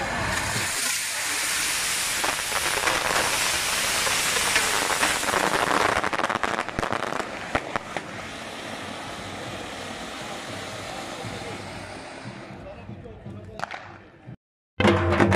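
Ground firework fountains hissing as they spray sparks, with a burst of sharp crackling about six to eight seconds in, then a quieter hiss that fades away near the end.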